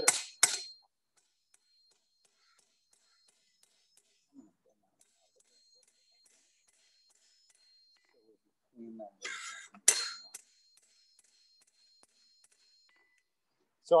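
Mostly quiet, then about nine seconds in a brief scraping rush followed by a single sharp metallic strike, as from a blacksmith's hammer blow on iron at the anvil.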